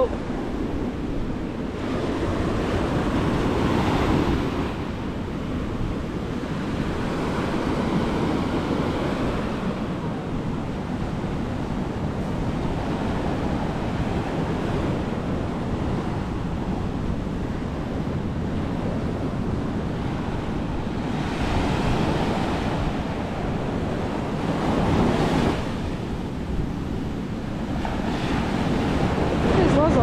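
Ocean surf breaking on a sandy beach, with the wash of waves swelling up several times over a steady roar. Wind buffets the microphone with a low rumble.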